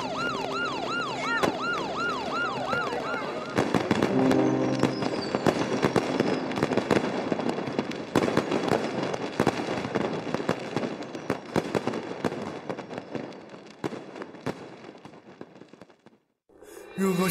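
Police siren wailing in quick rising-and-falling cycles, a couple a second, stopping about three and a half seconds in. Then fireworks go off in rapid bangs and crackles, dense at first and fading away toward the end.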